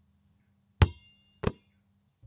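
Two sharp percussive hits about two-thirds of a second apart, the first trailing a brief faint ring, in a segment-break sound effect.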